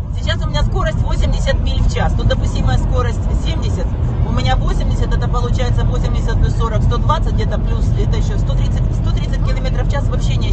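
Steady road and engine rumble inside a moving car, with voices from a radio talk show on the car stereo over it. A song on the radio gives way to the talk right at the start.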